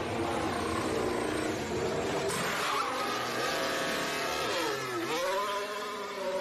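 Race car engine sound effect: a high-revving engine holding its pitch, then dipping sharply about five seconds in and climbing again.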